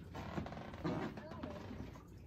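Faint, indistinct voice with rustling handling noise from a phone being moved about.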